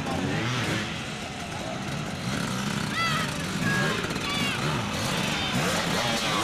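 Dirt bike engines revving up and down, several at once, with spectators talking and shouting over them.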